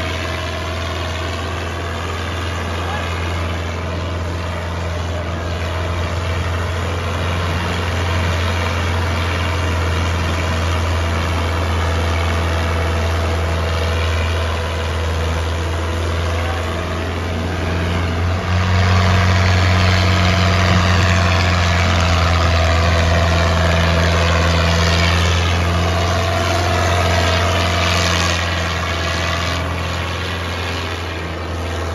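New Holland 640 tractor's diesel engine running steadily under load as it pulls a disc harrow through soil, getting louder a little past halfway.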